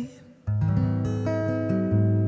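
Acoustic guitar: after a brief pause, a chord is strummed about half a second in and left ringing, then a new chord is played near the end.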